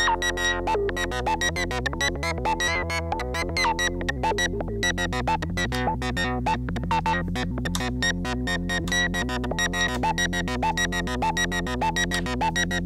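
Doepfer Eurorack modular synthesizer playing a fast step-sequenced pattern of short pitched notes, several a second, driven by an A-155 analog/trigger sequencer under an A-154 sequencer controller.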